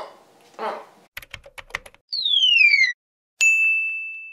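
Logo sound effects: a quick run of sharp typing clicks, then a whistle that slides down in pitch, then a sudden bell-like ding that rings on steadily.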